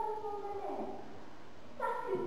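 A high-pitched voice holding one long, drawn-out call on a steady pitch that falls away about a second in.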